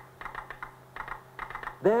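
Telegraph clicking out code: a quick, irregular run of sharp clicks, with a faint low hum under it.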